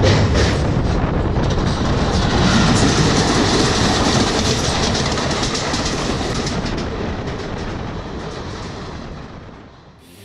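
Passenger train running at speed, heard from an open coach doorway: rushing wind and wheels clattering over rail joints as another passenger train passes on the next track. The sound fades out near the end.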